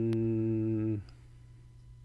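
A man's closed-mouth hum, 'mm-hmm', held at one steady pitch and stopping about a second in. After it there is only quiet room tone with a low steady hum.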